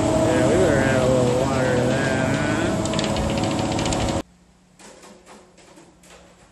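Concrete mixer truck's diesel engine running steadily during the pour, with a voice calling out over it. The noise cuts off abruptly about four seconds in, leaving only faint taps.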